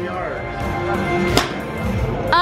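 A golf driver striking a ball off a hitting mat: one sharp crack about one and a half seconds in, over background music.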